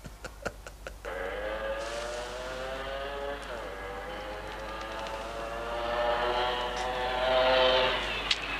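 Man's laughter dying away, then a motorcycle engine running and approaching, its note dipping briefly in pitch partway through and growing louder toward the end as it nears.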